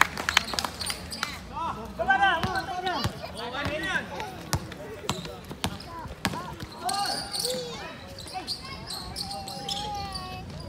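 A basketball bouncing on a hard outdoor court during play, sharp knocks scattered irregularly through, with players' voices calling out over it.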